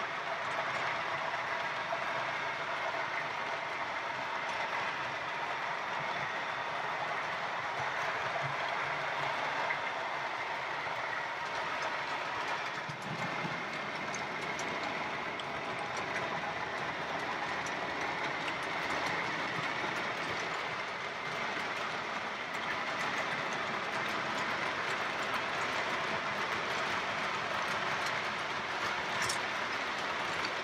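OO gauge model trains running along the layout's track: a steady running noise of metal wheels on the rails, with an occasional faint click.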